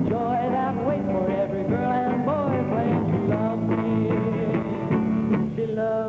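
A live rock-and-roll song: a male singer with guitar, backed by electric guitar and drums, playing steadily.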